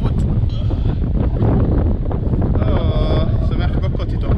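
Wind buffeting the microphone, a continuous low rumble, with a brief high-pitched call about three seconds in.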